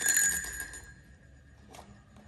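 Wire quail trap being handled: a sharp metallic clink at the start with a bright ringing that fades within about a second, then a faint click near the end.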